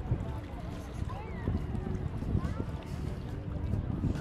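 Beach ambience: wind rumbling on the microphone, with distant voices of people on the beach calling and chattering.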